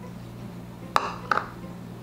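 Two light clinks about a second in, a third of a second apart, as a small bowl just emptied of sugar is knocked and set down on a hard stone countertop.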